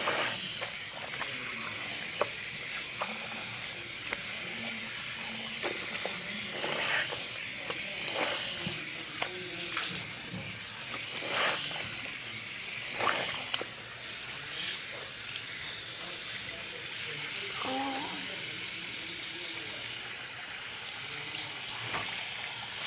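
Tap water running steadily into a bathroom wash basin, with scattered clicks and knocks of things being handled at the sink.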